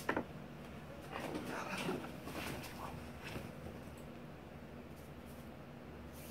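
A sharp click right at the start, then faint rustling and light knocks of someone handling things while fetching her yarn.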